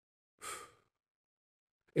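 A man's single short breath, like a sigh, about half a second in, in an otherwise silent pause.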